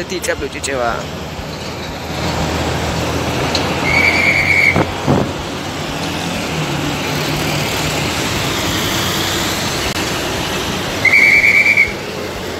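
Heavy trucks' engines running in a congested street, with two short, steady blasts of a traffic officer's whistle, about four seconds in and again near the end. A single knock sounds about five seconds in.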